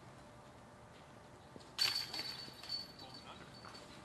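A disc golf disc hitting the chains of a metal basket about two seconds in: a sudden metallic crash of chains that jingles and rings, with a few smaller clinks as it fades over the next two seconds.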